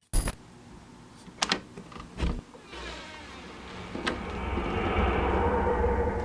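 A sharp click, a couple of fainter clicks, then a low drone with a steady hum over it that swells gradually from about three seconds in.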